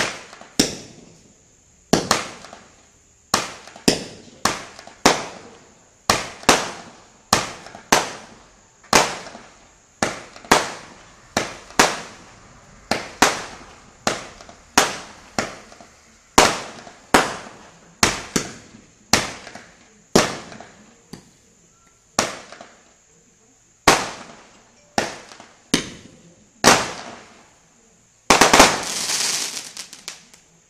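Benwell 'Kaleidoscope' 25-shot firework cake firing: a string of sharp bangs, roughly one a second and sometimes closer together, each echoing away. Near the end comes a longer, louder noisy burst.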